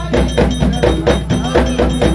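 Haitian Vodou ceremonial drums played by an ensemble in a fast, steady rhythm, with a metal bell struck along with them.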